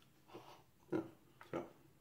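A man eating a mouthful of food: about four short grunt-like mouth and breath noises, roughly half a second apart, as he chews.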